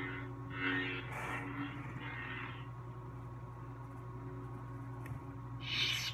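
Lightsaber soundboard (Verso, smoothswing) hum playing from the hilt's speaker as a steady low drone, with several soft whooshing swing sounds in the first two and a half seconds as the lit hilt is moved. A brighter, hissier swell comes just before the end.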